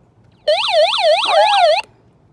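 SOS alarm of a DaringSnail hand-crank emergency weather radio sounding briefly: a really loud, fast-warbling siren tone, about five up-and-down sweeps a second, that starts about half a second in and cuts off suddenly after about a second and a half.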